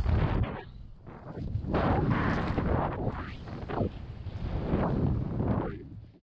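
Wind rushing over the helmet-mounted camera's microphone of a BASE jumper flying under an open parachute. It swells and fades in gusts: loud at first, dropping about a second in, then rising twice more.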